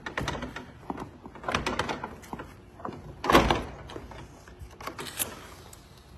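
Multi-panel sliding glass patio door being unlatched and worked open: scattered clicks and knocks from the latch trigger and panel, with one louder, longer noise about halfway through and a sharp click near the end.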